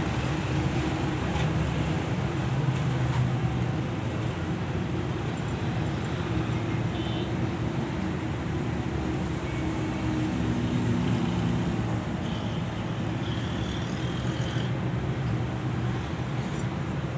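A steady low rumble that holds level throughout, with a few faint ticks over it.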